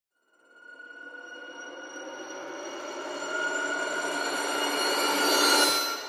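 Cinematic intro sound effect: a droning chord of steady tones under a swell that grows louder for about five seconds. It cuts off sharply just before the end, leaving the tones ringing and fading.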